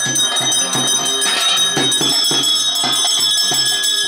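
Ritual percussion music with bells ringing: drum strokes in a steady rhythm, a few a second, under bright sustained metallic ringing that gets stronger partway through.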